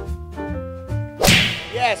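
Soft keyboard music with held notes, cut about a second in by a loud swoosh transition effect. Short swooping pitch glides follow as the music changes over.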